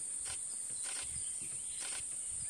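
Steady high-pitched insect drone, with three soft clicks spread across the two seconds.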